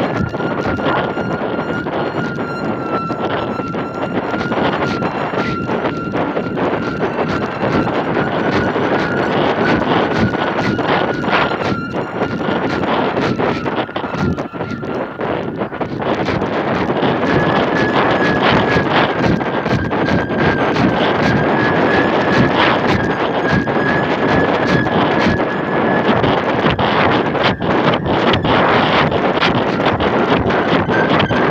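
Wind buffeting the microphone of a camera carried aloft on a kite, loud and gusty, with a steady high whistling tone that steps slightly higher about halfway through.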